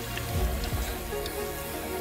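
Background music over a steady hiss of mountain bike tyres rolling over a loose, dry gravel trail. Some low rumbles come in the first second.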